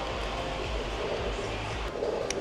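Steady rushing air from an electric pedestal fan, with a low rumble of the airflow buffeting the microphone that stops abruptly near the end, where a single small click is heard.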